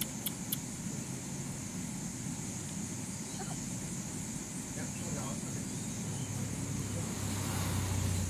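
Steady low rumble of background road traffic, swelling near the end as a vehicle passes closer, under a faint steady high hiss.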